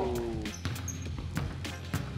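Basketball bouncing on a court, a handful of sharp bounces spread through the moment, over a steady music bed.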